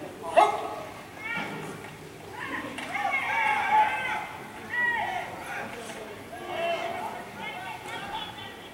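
Spectators shouting encouragement during a full-contact karate bout: repeated short, high-pitched calls in bursts, after one sharp shout about half a second in.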